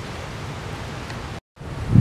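Steady outdoor background hiss with no voice, cut off by a brief dead-silent gap about one and a half seconds in where two takes are spliced, then resuming with a low thump near the end.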